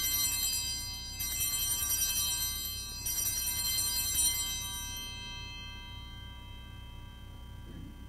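Altar bells rung three times at the elevation of the chalice during the consecration, each ring a bright shimmer of high tones that then fades slowly away.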